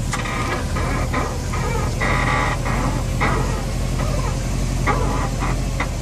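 Endless Zeal Function V6 coilover on a Subaru WRX squeaking: a series of short, high squeaks with one longer squeak about two seconds in and a quick cluster near the end, over the steady low hum of the engine running.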